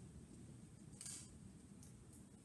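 Near silence: room tone, with a faint, brief scratch of writing on paper about a second in.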